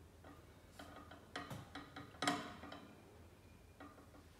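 Plastic screw cap of a water bottle being twisted by hand while the bottle is clamped in a cap torque tester: a few light clicks and crackles, the loudest a little over two seconds in.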